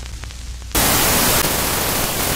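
Television static: a lower buzzing noise with a low hum gives way, under a second in, to a loud, even hiss of white noise.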